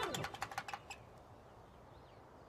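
Electronic doorbell of a video intercom ringing as its call button is pressed: a quick run of bright, chiming tones during the first second, then dying away.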